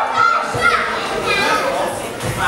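Spectators shouting and calling out over one another, some voices high-pitched.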